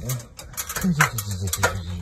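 A man's voice speaking in low tones, with a few sharp knocks about a second in and again just after one and a half seconds.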